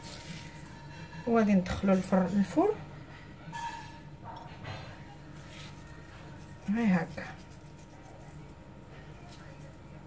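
A woman's voice speaking briefly twice, a short phrase a little over a second in and one short sound near the seventh second, with faint room background in between.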